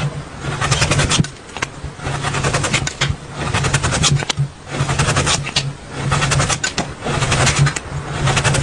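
A cleaver chopping rapidly through radish onto a cutting board: fast runs of knife strikes in repeated bursts about a second long, with short pauses between.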